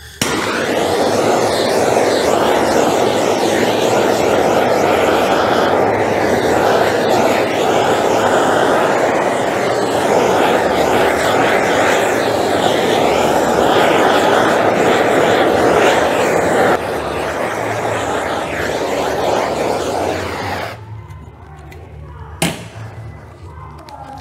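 Handheld propane torch burning with a steady loud hiss as its flame is passed over freshly poured epoxy resin to pop surface bubbles. The hiss drops somewhat about 17 seconds in and cuts off around 21 seconds, followed by a single sharp click.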